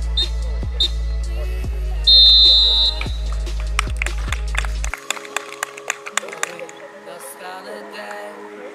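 Referee's whistle signalling full time: two short blasts, then one long, loud blast about two seconds in, over background music with a heavy beat that cuts off about five seconds in. Players' voices follow.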